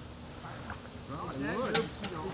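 Indistinct voices of several people talking over one another, no words made out, growing louder in the second half.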